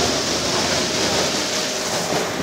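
Steady noise of a Cairo Metro train at the station platform, with a faint held whine running through it.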